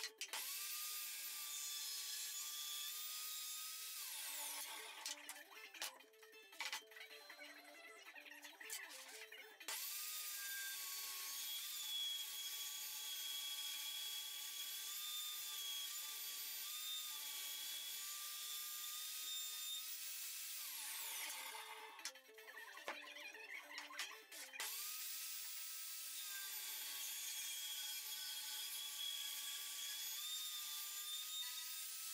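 Table saw motor and blade switched on three times: each time it runs up quickly to a steady high whine, and boards are fed through for a rip cut. The first two runs are switched off and spin down in a falling whine. The third, on a hardwood board, is still running at the end.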